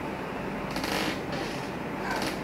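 Steady room hiss with a brief rustle about a second in, and a fainter one just after.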